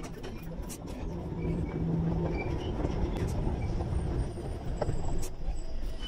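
Low rumble of a Tyne and Wear Metro train in the underground station, swelling about a second in and then holding steady.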